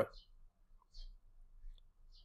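A few faint, short clicks, three or four spread over about two seconds, in a quiet room.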